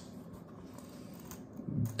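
Faint rustle of a stiff leather valet tray being handled and bent in the hands, with no sharp snap.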